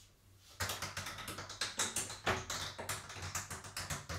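A Plinko ball dropping down the pegs of a wooden Plinko board: a rapid, irregular clatter of small taps and clicks that starts about half a second in and keeps going.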